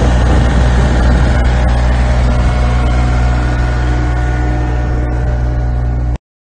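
John Deere F1145 front mower's diesel engine running loud and steady.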